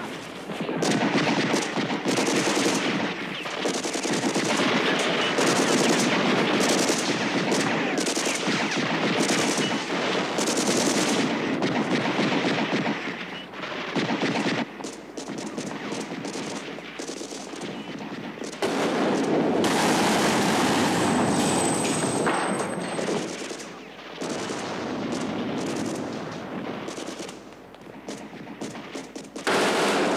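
Heavy automatic gunfire in long, dense bursts, easing into quieter stretches around the middle and again near the end, then loud again at the very end.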